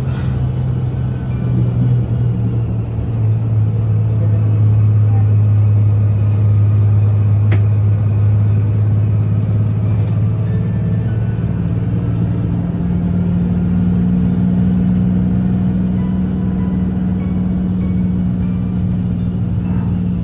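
Shuttle bus driving, heard from inside the cabin: a steady low drone over road noise. The drone drops in pitch about three seconds in and steps back up about twelve seconds in as the bus changes speed.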